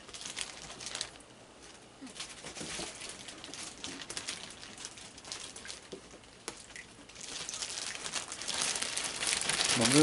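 A plastic bag crinkling and rustling in irregular bursts, busier and louder over the last three seconds, as marshmallows are taken out to toss to raccoons.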